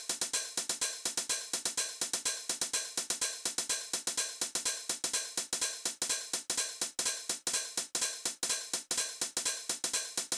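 Roland TR-6S drum machine playing a TR-909-style hi-hat pattern: a quick, even run of hi-hat ticks, about eight a second. The shuffle is being dialled in as it plays, swinging the steps.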